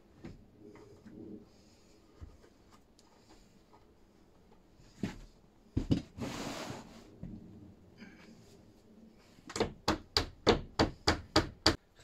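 A hammer tapping a wooden insert into a window frame: a few scattered knocks and a rustle, then a quick run of about ten sharp blows, about four a second, near the end.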